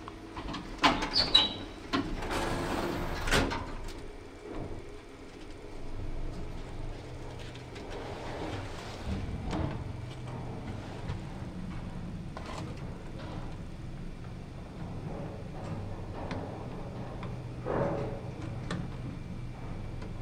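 Early Kone lift's doors sliding shut about two seconds in, then the car running down to the basement with a steady low hum and occasional small clicks.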